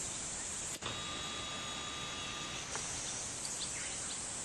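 A camcorder's zoom motor whines steadily for about two seconds, starting about a second in, as the lens zooms in. A steady high insect chorus runs underneath.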